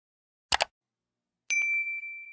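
Sound effects of an animated subscribe button: a short mouse-click sound about half a second in, then a bright notification-bell ding about a second later that rings on with a steady tone.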